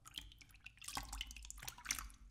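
Faint water dripping and light splashing as bare feet step out of a shallow inflatable paddling pool: a scatter of small, sharp drips and clicks.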